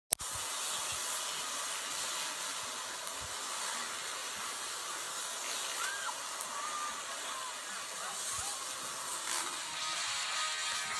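A steady hiss, with a sharp click at the very start.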